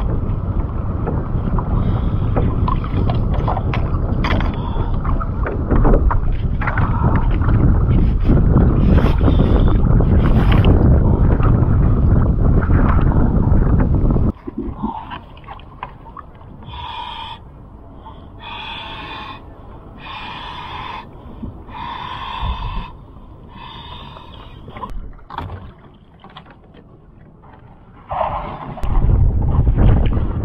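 Water sloshing and splashing against a sea kayak, with wind buffeting the microphone, while a swimmer works at the boat during a paddle float self-rescue. About halfway the noise drops away, and there is a run of short, regular puffs about every two seconds. The loud sloshing comes back near the end.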